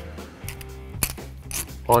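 Quiet background music, with one light metallic click about a second in as a spring washer is pushed onto the splined end of a CV axle.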